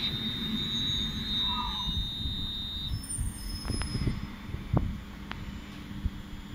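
London Northwestern Railway electric train running slowly past at close range, with a steady low rumble. A high-pitched steady squeal from the train stops about halfway through, and a few sharp clicks follow.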